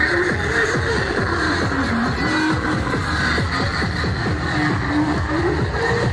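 Loud music with a busy, steady beat under a melody of short held notes.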